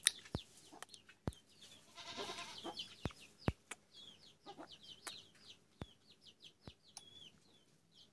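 Faint, high chirps from birds, several a second, mixed with scattered sharp clicks. About two seconds in there is a brief, louder animal call.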